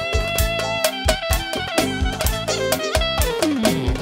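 Fast dance music from a band: a steady beat of about four strokes a second under a sustained melody line that slides downward near the end.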